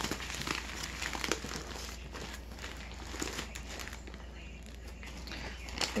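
Plastic packaging crinkling and rustling as items are handled inside a sequined bag, with many small clicks and rubs throughout.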